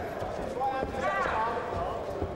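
Voices of people watching a boxing bout, with dull thuds from the two boxers grappling in a clinch.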